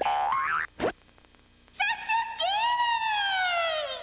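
Cartoon sound effects for an animated title: gliding, siren-like synthesized tones, a quick upward zip just under a second in, a brief pause, then a long boing-like tone that rises and slowly falls.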